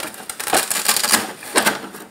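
Velcro strips on an RC truck's body mount tearing apart as the Lexan body is pulled off the chassis: a crackling rip, loudest about half a second in and again near the end.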